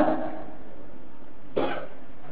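A single short cough about one and a half seconds in, over a steady background hiss.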